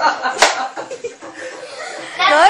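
A single sharp slap about half a second in, over faint talk and laughter.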